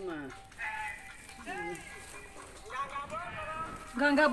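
Faint, intermittent voices in the background, a few short wavering utterances with quiet between them.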